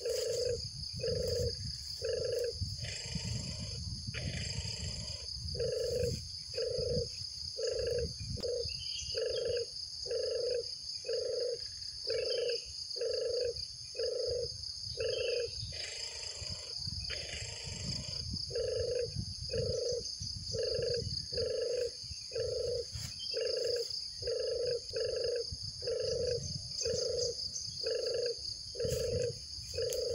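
A short, low hooting call repeated at a very even pace, a little faster than once a second, with two brief pauses, over a continuous high-pitched drone.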